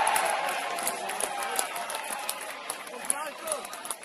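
Football crowd and players cheering and shouting just after a goal, the noise loudest at first and dying away over a few seconds.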